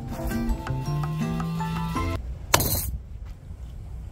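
Background music for the first two seconds, then a single sharp chop, about two and a half seconds in, of a cleaver blade striking into a green coconut to split it open.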